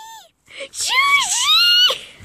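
A child's high-pitched squeal lasting about a second and a half, its pitch dipping and then rising.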